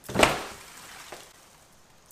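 An empty cardboard box landing on a concrete floor with one sharp slap about a quarter second in, then a faint small knock about a second in.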